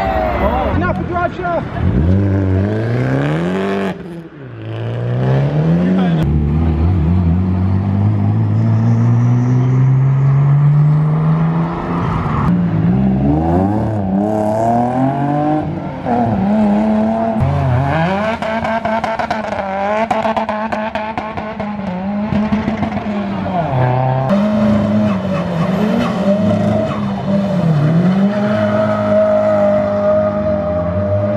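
Modified car engines revving hard as cars pull away, climbing in steps through the gears. In the second half, an engine is held high and dips and climbs again and again as a car spins its rear tyres in a smoky burnout, with tyre squeal.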